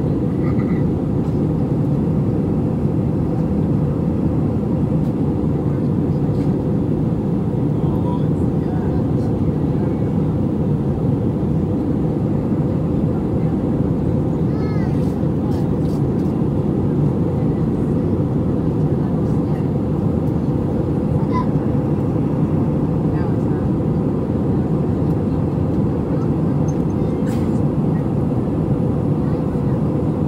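Steady roar of an Airbus A320 heard from inside the passenger cabin: engine noise and airflow in flight, even and unchanging throughout.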